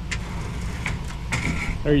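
Low, steady rumble of a pickup truck's engine idling, with a few faint knocks and scrapes as a pontoon boat is shoved off its trailer into the water.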